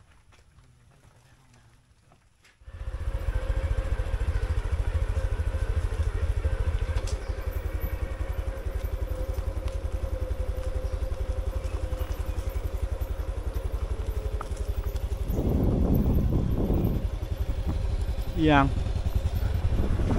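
Near silence, then, about three seconds in, a motorcycle is suddenly heard riding along: steady engine running with a heavy low rumble of wind on the microphone.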